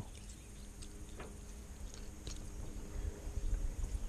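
Faint handling noises, a few small clicks and rustles, as a bass that swallowed the lure is worked free by hand, over a low rumble.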